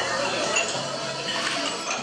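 Diners' cutlery and glassware clinking several times against a steady murmur of many people talking, with music playing underneath.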